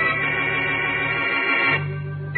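Organ music, a sustained chord of the kind used for 1940s radio-drama bridges. About a second and a half in, the chord thins out and a new one with a deep bass note comes in.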